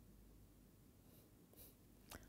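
Near silence: room tone, with a couple of faint, soft rustles in the second second.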